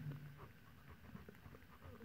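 Near silence, with faint light scratching of a ballpoint pen writing on notebook paper.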